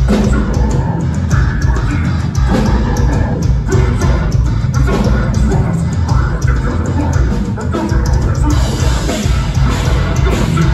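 Deathcore band playing live at full volume: heavily distorted guitars and bass over drums, with a dense, bass-heavy sound.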